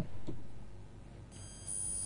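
A steady, high-pitched electronic tone comes in a little after halfway and holds, over quiet room tone.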